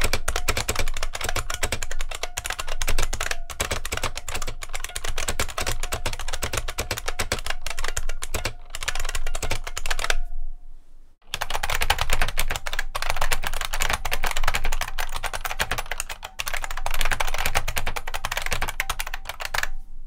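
Fast typing on a 1986 IBM Model M buckling-spring keyboard (model 1390131), a dense run of loud key clicks. After a short pause about halfway through, the same fast typing continues on a Unicomp Model M buckling-spring keyboard.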